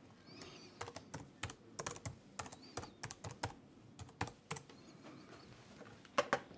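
Typing on a laptop keyboard: about a dozen faint, irregular keystrokes over roughly four seconds as a login password is entered, stopping around four and a half seconds in.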